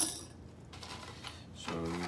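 Zinc-plated steel screws and washers dropped into a glass jar of water: one brief metallic clink at the beginning, then faint handling noise.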